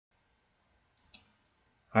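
Two short clicks, about a fifth of a second apart, of a computer mouse button. Speech begins just before the end.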